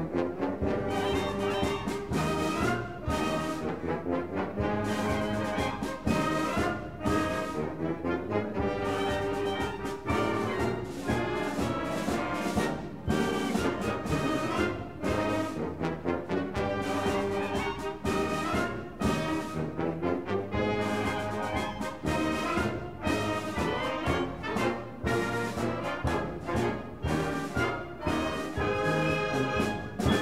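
High school concert band of woodwinds and brass playing a lively passage of short, accented chords, ending on a final chord that cuts off cleanly at the very end.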